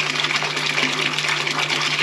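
Small electric pump of a terracotta tabletop fountain running with a steady low hum, its water jet splashing into the clay basin in an even hiss.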